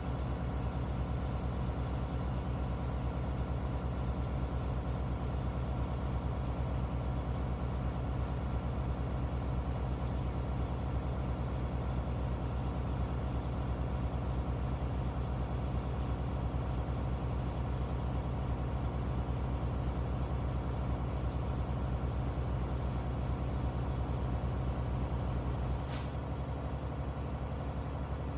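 Semi-truck diesel engine running steadily at about 1500 rpm while its air compressor builds brake air pressure, heard from inside the cab. Near the end comes a short burst of air as the air governor reaches cut-out, and the deepest part of the engine drone drops away.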